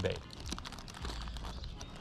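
Faint rustling and crinkling of hands rummaging in a soft tackle bag full of soft-plastic bait packs.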